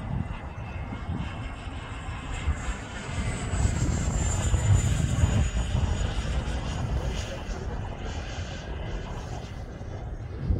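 Wemotec 100 mm electric ducted fan of a Black Horse Viper XL model jet in flight: a high whine that grows louder as the jet passes close by about four to five seconds in, its pitch falling as it goes past, then fading.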